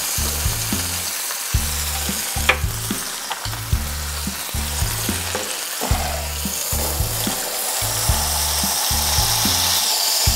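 Maitake mushrooms sizzling steadily as they fry in oil in a skillet, with a sharp click about two and a half seconds in and a few lighter ticks.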